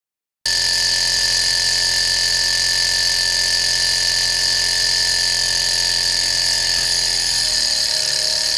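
A small Stirling model engine running steadily on a gas flame: a continuous mechanical whir with a steady high whine, starting suddenly about half a second in. After an hour of running it makes a little more mechanical noise, which the owner thinks may mean some joints need oil.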